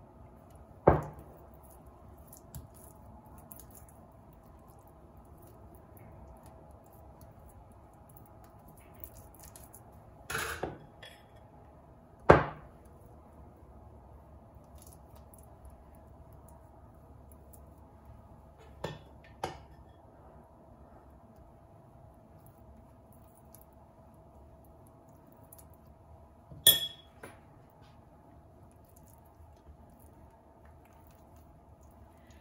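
Metal spoon clinking against a glass bowl: about six short, sharp clinks scattered over half a minute, one of them a pair in quick succession.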